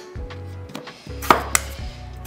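Kitchen knife dicing potatoes: a few sharp knocks of the blade through the potato onto the board, the loudest about a second and a half in, over quiet steady background music.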